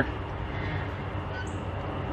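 Steady low outdoor background rumble with no distinct knock or clunk while the ceramic grill's lid is lifted open, and a faint, brief high chirp about one and a half seconds in.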